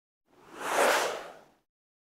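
A single whoosh sound effect for a broadcast logo transition. It swells up about a third of a second in, peaks, and fades out by about a second and a half.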